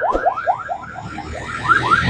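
An electronic alarm sounding a rapid train of rising chirps, about five or six a second. Near the end a truck passing close by adds a low rumble.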